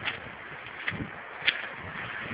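A few faint crunches of footsteps on the track's gravel ballast, spread out over a steady outdoor hiss.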